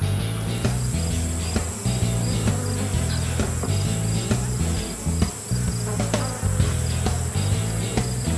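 Background music with a bassline of changing low notes and a steady beat, over a continuous high, cricket-like chirring.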